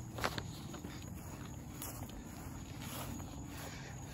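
Footsteps of a person walking across grass and onto loose gravel, soft and irregular, over a low steady rumble.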